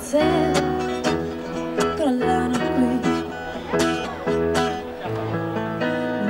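Steel-string acoustic guitar strummed in a steady rhythm, with a woman's singing voice over it in a live performance.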